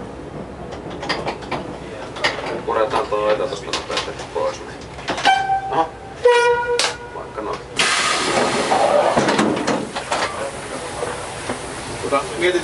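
Dm7 railcar's horn sounding two short notes, the first higher and the second lower, about five and six seconds in, over clicking from the slowly rolling railcar. About eight seconds in, a sudden loud hiss starts and runs for about three seconds.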